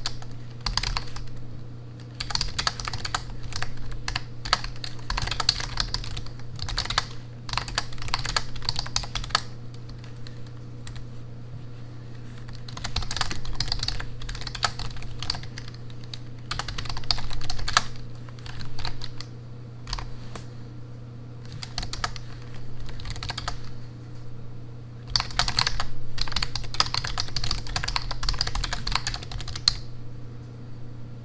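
Typing on a computer keyboard: quick runs of key clicks in bursts, broken by short pauses, over a steady low hum.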